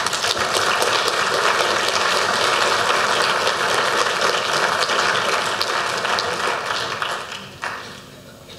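Audience applauding at the end of a talk: many hands clapping steadily, then dying away near the end.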